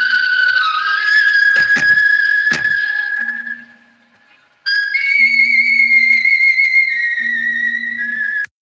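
A loud, steady, high-pitched whistling tone with a slight waver and a few clicks over it in the first three seconds. It drops out for about half a second around four seconds in, then comes back a little higher in pitch.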